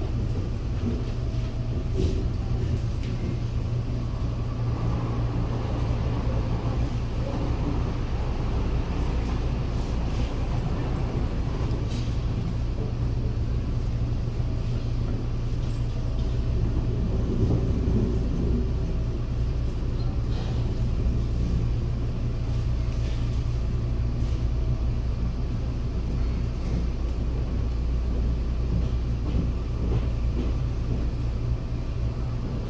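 Steady low rumble of a CPTM series 8500 electric train heard from inside the car as it runs along the line, with a faint steady tone and a few light clicks.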